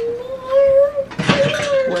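A house cat meowing: one long call that rises and then holds steady for about a second. It is followed by a short clatter, like dishes or utensils being handled.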